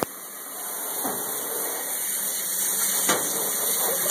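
Water spraying from a hand-held hose sprayer onto a dog's coat: a steady hiss that builds over the first second and then holds.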